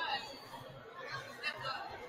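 Indistinct chatter of several voices, with no words standing out.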